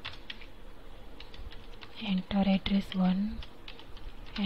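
Computer keyboard typing: quick, irregular keystroke clicks as text is entered into a form. A voice speaks briefly and more loudly from about halfway through.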